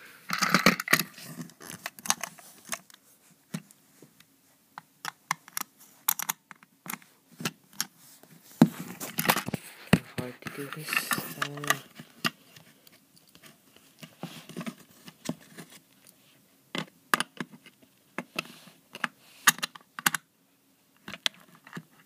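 Irregular clicks, taps and scrapes of hard plastic from hands handling and working at a Trackmaster Thomas toy engine, in uneven clusters with quieter gaps.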